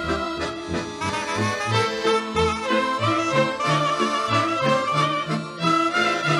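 A Romanian folk orchestra playing an instrumental interlude between sung verses, lively and steady, over a bass line of short, changing notes.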